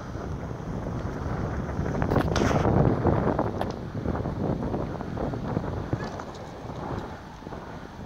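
Wind buffeting the microphone: a low, rumbling noise that swells to its loudest two to three seconds in, with a few faint clicks.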